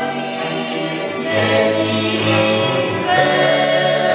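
Polish highland (góral) folk band: several voices singing long held notes together over bowed fiddles and a cello-sized bass.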